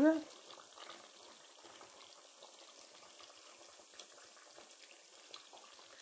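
Faint, wet scooping of a metal serving spoon through a pot of hot chicken and vegetable stew, with a few small clinks scattered through it.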